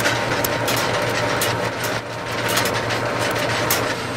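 Steady hum and whir of running telephone-exchange switching equipment, with a low mains hum beneath and a scatter of sharp clicks through it.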